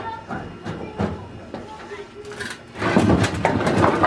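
A broken wooden pallet being ripped out from under a heavy engine block: scattered knocks and creaks of wood, then, about three seconds in, a loud run of cracking and scraping.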